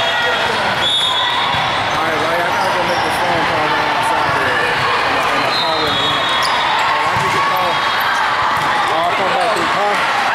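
Tournament-hall din from several volleyball courts at once: many voices talking and calling over one another, with sneakers squeaking on the sport-court floor and the thuds of volleyballs being hit. Squeaks stand out about a second in and again around the middle.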